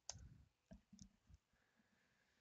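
Near silence: room tone with one faint click just after the start and a few fainter ticks about a second in.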